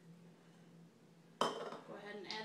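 Kitchenware clatter: near quiet at first, then one sharp clack with a short ring-out about one and a half seconds in, as a measuring cup and spatula meet the mixing bowl while pasta salad is stirred.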